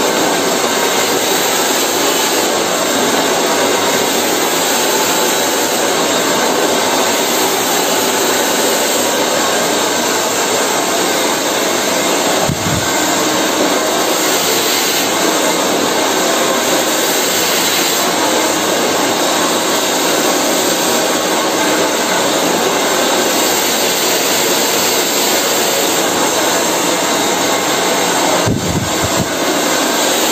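Handheld hair dryer running close by, a loud, steady rush of blown air. The sound dips briefly twice, about twelve seconds in and near the end.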